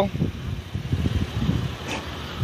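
Wind buffeting a phone's microphone outdoors: an uneven low rumble that rises and falls.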